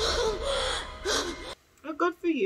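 A young woman gasping for breath, several quick breathy gasps over a low background rumble, cut off suddenly about a second and a half in. A woman's voice starts just before the end.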